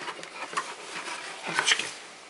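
Handling noise: a cardboard box rustling and light knocks as an oil pump is lifted out of it, with a louder rustle about one and a half seconds in.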